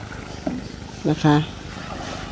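A woman says a short phrase about a second in, over a low, steady background rumble.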